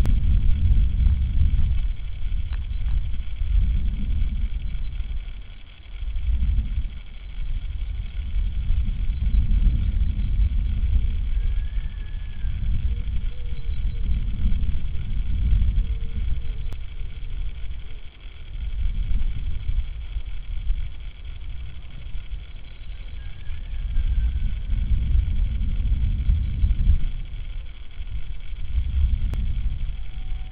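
Wind buffeting an outdoor microphone, a low rumble that swells and dips in gusts. Twice, a faint short high bird call rises above it.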